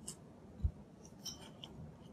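A few faint taps and clicks of a stylus writing on a tablet screen, with one dull low thump about two thirds of a second in.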